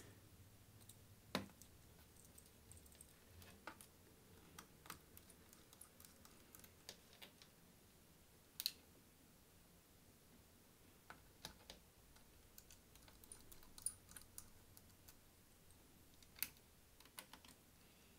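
Faint, scattered clicks and ticks of a small precision screwdriver working screws into a laptop's plastic bottom cover, with one louder click about halfway through.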